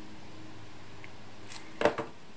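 Faint, steady hum of a lawnmower engine running at a distance. Near the end, a short crisp rustle and tap of paper pieces being handled on the table, the loudest sound.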